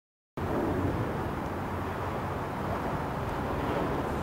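Steady low outdoor rumble and hiss, starting abruptly about a third of a second in, with no distinct event.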